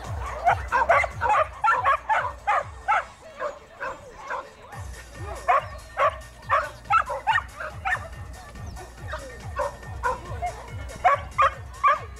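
Shetland sheepdog barking over and over in short, sharp yaps, about two to three a second, easing off briefly about four seconds in and then picking up again.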